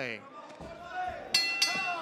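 Boxing ring bell struck twice in quick succession, about a quarter second apart, each strike ringing briefly: the bell ending the round. Voices shout around it.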